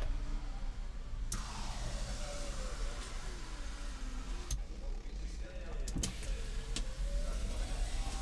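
The electric sliding rear window of a 2008 Dodge Ram 2500 cab opening: a click, then a motor whine that wavers in pitch and runs for about five seconds.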